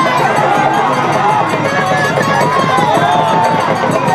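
Dense crowd noise: many voices talking and calling over one another at once, loud and steady, with no single speaker standing out.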